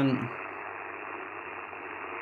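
Icom IC-705 transceiver's speaker giving steady band hiss on 40-metre LSB with RF gain at full and no station heard, a dull hiss with no highs.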